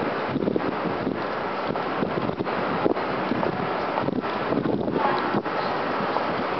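Steady rushing noise of wind on a compact camera's built-in microphone, rising and falling slightly from moment to moment.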